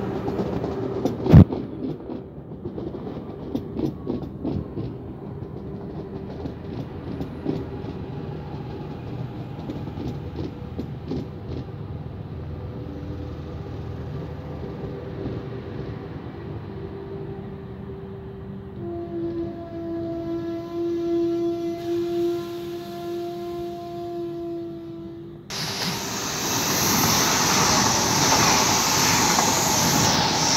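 Double-deck Z22500 electric suburban train running past with clicking wheels over rail joints and one sharp bang about a second in, then a steady electric whine from its traction equipment that climbs slightly in pitch as it moves along. Near the end an ICE high-speed train rushes past at speed with a loud, even roar of air and wheels.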